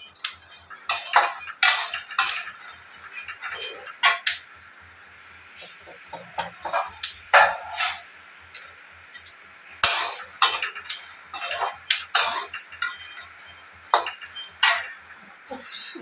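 Kitchen utensils and dishes clinking and clattering in short irregular bursts, over a faint low hum.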